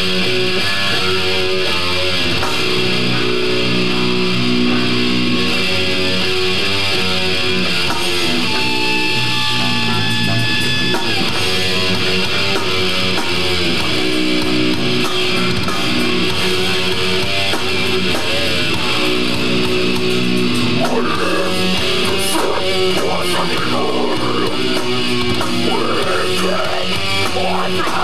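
Death metal band playing live: electric guitars, bass guitar and drum kit, loud and dense throughout.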